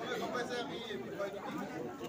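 Crowd chatter: many people talking at once in low, overlapping voices, with no one voice standing out.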